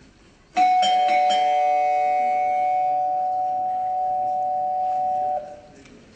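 Doorbell ringing: it starts suddenly with a few quick strikes, then holds a steady tone for about five seconds before cutting off abruptly.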